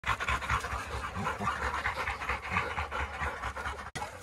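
A Weimaraner panting close up, quick and even, that cuts off just before the end.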